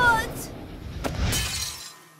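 Cartoon sound effect of a hand mirror falling to the floor: a sharp knock about a second in, then a glassy crash that fades away.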